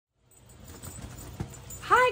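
Faint room noise with a soft knock partway through, then a woman's voice starting just before the end.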